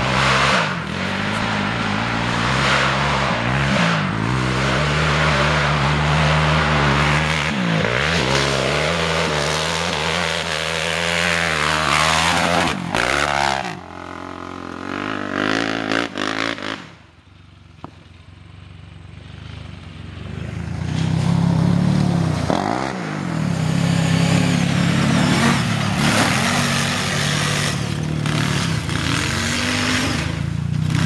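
ATV engines running and revving, their pitch rising and falling. The engine sound fades to a quiet stretch a little past halfway, then builds back up loud.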